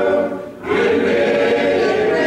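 Congregation singing together, a mix of voices in a reverberant room, with a brief break between lines about half a second in before the singing picks up again.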